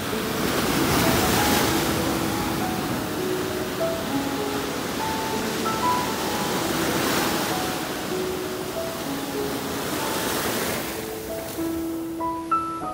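Shallow surf washing up over wet sand and drawing back, swelling three times: near the start, about seven seconds in and near ten seconds. Background piano music plays over it.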